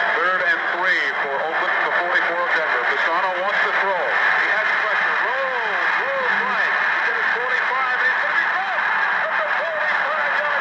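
Radio broadcast of an American football game: an announcer's voice over a steady background hiss.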